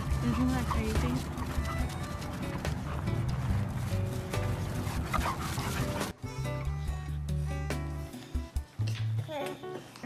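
Busy mix of dog vocal sounds and background music for about six seconds. After an abrupt cut it turns to quieter steady low notes, and short bursts of a small child's laughter come near the end.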